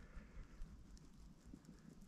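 Near silence, with a few faint small ticks.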